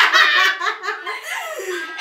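Two young women laughing hard together, loudest at the start and trailing off.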